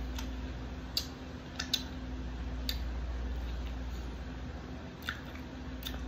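Close-up mouth sounds of someone chewing sushi: about six short sharp clicks and smacks, scattered irregularly, over a steady low room hum.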